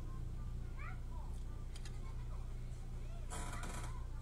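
A cat meowing in short rising calls about a second in, with a brief scratchy noise near the end over a steady low hum.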